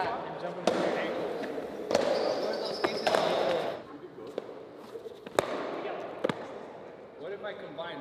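Onewheel boards knocking and slapping on a concrete floor as riders land and bail on tricks: several sharp knocks scattered a second or so apart. Under the first half runs a rushing hiss that dies away about four seconds in.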